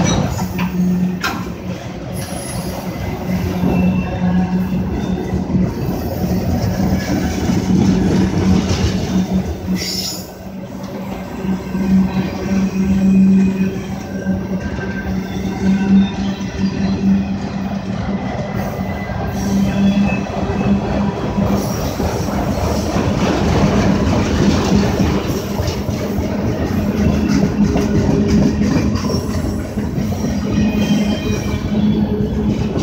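Freight train of autorack cars rolling past at close range: a continuous rumble of steel wheels on the rails with a steady low hum, and wheel squeal at times.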